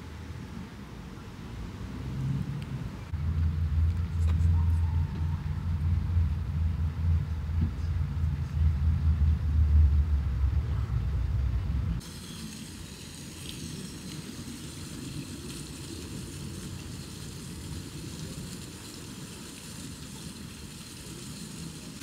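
A loud low rumble for most of the first half stops abruptly at a cut. It is followed by the steady hiss and splash of a fountain's falling water.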